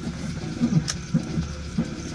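Car engine idling, heard from inside the cabin as a steady low hum, with one sharp click about a second in.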